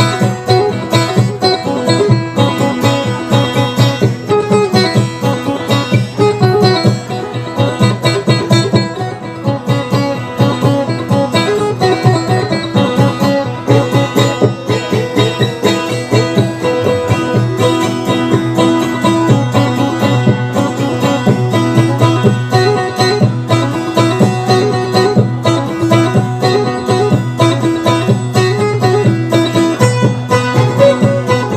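Acoustic guitar played as an instrumental dayunday accompaniment: quick plucked melody notes over a low note that keeps ringing underneath.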